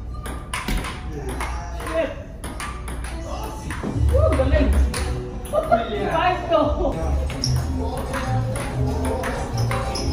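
Table tennis rallies: a ping-pong ball clicking off paddles and table in quick, irregular succession, under background music and voices.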